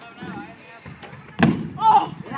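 A stunt scooter lands on a skatepark ramp with one loud, sharp impact about one and a half seconds in, followed at once by a boy's short high shout. Faint voices are heard before the impact.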